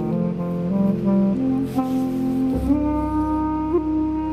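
Clarinet playing long held notes over a synthesizer in a free improvisation. The synth's deep bass notes thin out at the start and come back strongly about two and a half seconds in.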